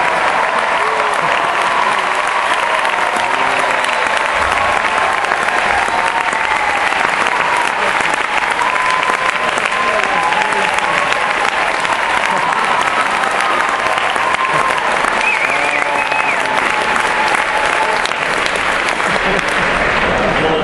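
A large audience applauding steadily for a long ovation, with voices cheering over the clapping.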